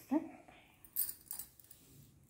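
Bangles on the wrists jingling in two short bursts about a second in as the hands move, after a brief spoken "huh".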